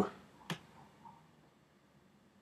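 The last of a spoken word fades, then one short, sharp click about half a second in and a fainter tick about a second in.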